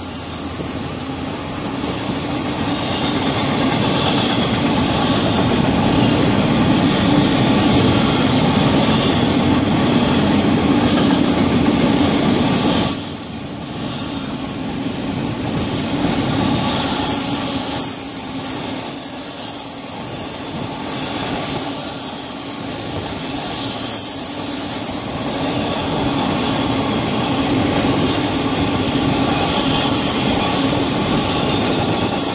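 Florida East Coast Railway intermodal freight cars rolling past on the rails, a steady rumble of wheels and cars that drops a little about 13 seconds in and then builds back.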